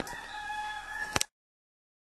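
Pressurised water leaking from a tank water heater, a steady whistling tone over a hiss. Two sharp clicks come just over a second in, and then the sound cuts off abruptly.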